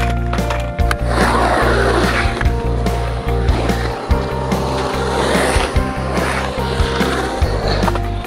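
Skateboard wheels rolling on a concrete bowl, the rolling noise swelling and fading in surges as the skater rides through the transitions, under background music with a steady bass line.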